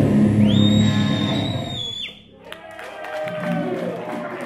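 Heavy metal band ending a song live: the last chord rings with a high held tone over it and cuts off suddenly about halfway. A crowd then cheers and claps.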